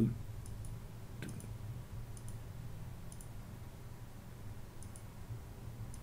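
Faint computer mouse clicks, about five pairs of quick clicks spread over a few seconds, over a low steady hum.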